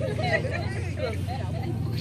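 Indistinct voices of people talking over a steady low rumble.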